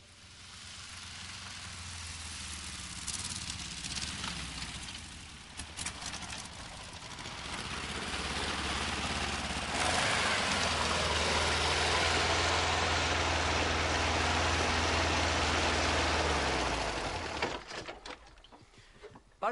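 A motor vehicle engine running with a steady low rumble and hiss. It builds up, is loudest in the second half, then falls away near the end, with a few sharp clicks in the first third.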